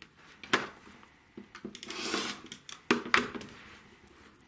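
Acrylic quilting ruler and rotary cutter handled on a cutting mat: several light clicks and taps, and a short swish about two seconds in.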